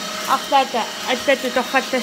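A woman talking in quick syllables, over a steady machine whine that runs under her voice.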